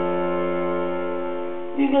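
Accordion holding a steady sustained chord between sung lines of a French chanson; a woman's singing voice comes back in near the end.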